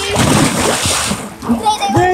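A child jumping into a swimming pool: one big splash as he lands, the water noise dying away over about a second, with a voice coming in near the end.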